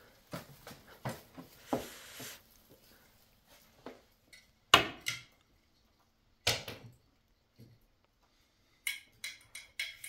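Scattered knocks and clicks from handling a UFO LED high-bay light and its safety cable against a wooden ceiling beam while hanging it. The sharpest knock comes about five seconds in, and a quick run of small clicks near the end.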